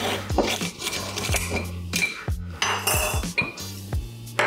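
A glass jar set down on the counter and its metal screw lid twisted off, with clinks, knocks and a brief scrape about three seconds in. Background music with a steady beat and bass runs underneath.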